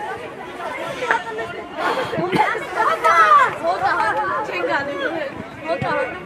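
Several voices calling out and talking over one another from spectators and players on a football pitch, loudest about halfway through with one high voice shouting.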